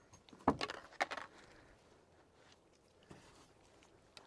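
A few sharp metallic clicks and clinks about half a second and about a second in, then a faint click about three seconds in: handling noise between shooting strings.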